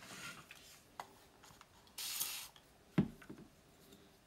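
A spray bottle of water giving one short spritz, a hiss of about half a second, about two seconds in, wetting a small heart cutout. Around it are a sharp click about a second in and a light knock near three seconds.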